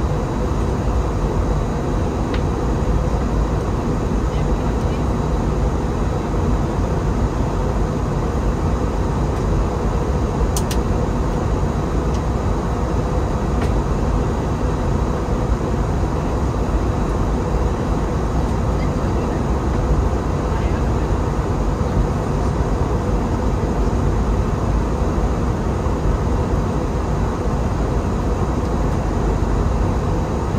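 Steady cabin noise of an Airbus A321 descending to land, heard from a window seat beside the wing: a low, even rush of engine and airflow with a faint steady hum. A brief click sounds about ten seconds in.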